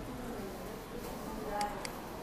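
A computer mouse double-clicked: two quick clicks a quarter-second apart, about a second and a half in, opening a folder. A low steady hum runs underneath.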